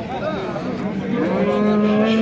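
A bull mooing: one long, steady call starting about a second in.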